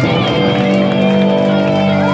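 A live band playing loud amplified music, heard from within the crowd. Sustained low chords move to a new chord at the start, under a held, gliding melody line.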